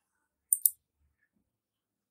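Two quick, sharp clicks close together about half a second in, against otherwise silent room tone.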